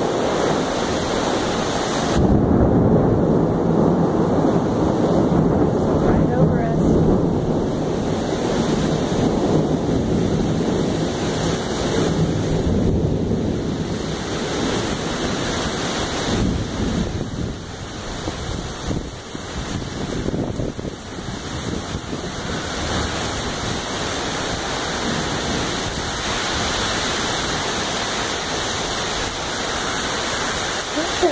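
Heavy rain and gusting wind of a thunderstorm, with wind buffeting the microphone; the loud noise swells and eases with the gusts.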